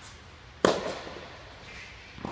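A tennis ball struck by a racket, one sharp pop about two-thirds of a second in, echoing in an indoor tennis hall.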